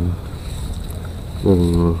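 A man speaking Vietnamese in short phrases, with a low steady rumble of wind on the microphone in the pause between them.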